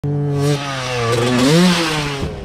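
Dirt bike engine running under throttle. The revs ease briefly just after half a second, then climb and fall again about a second and a half in.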